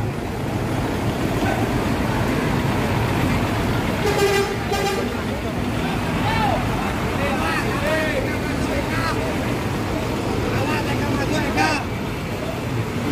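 Intercity bus engine running as the bus pulls in, with a brief horn toot about four seconds in and crowd chatter around it.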